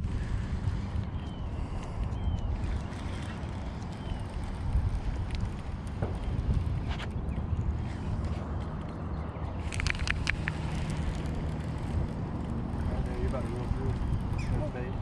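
Steady low outdoor rumble on the microphone, with scattered sharp clicks from handling a baitcasting rod and reel, and a quick run of clicks about ten seconds in.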